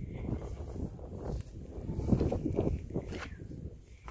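Wind buffeting the microphone in uneven low gusts, with footsteps in loose sand. The noise is heaviest about two seconds in.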